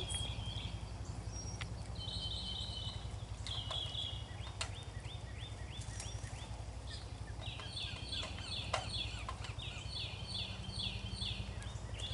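A bird singing in runs of quick, repeated downslurred notes, several runs in turn, the longest near the end, over a steady low hum.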